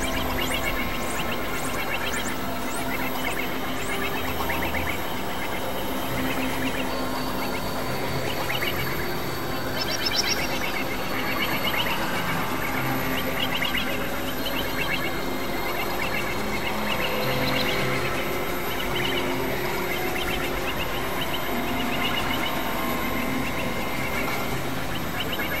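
Experimental electronic synthesizer music: a dense, noisy texture of held drone tones, with a busy layer of quick chirping and warbling sounds high up throughout.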